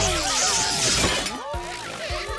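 Cartoon music score with a magic-wand sound effect: a bright, glassy, shimmering hiss that rises about a quarter second in and fades out by about one second.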